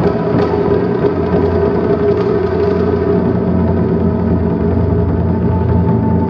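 Japanese taiko drums, large barrel drums among them, played in a fast continuous roll that makes a steady, unbroken rumble, after a couple of separate strikes at the start.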